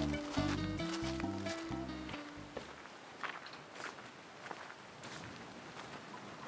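Background music with a steady bass line that stops about two and a half seconds in, followed by footsteps on a dirt path, a step roughly every half second to second.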